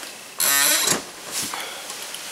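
Movement noise as a person gets up toward the camera. About half a second in there is a short buzzy tone lasting half a second, then a soft knock and a low rustle of clothing.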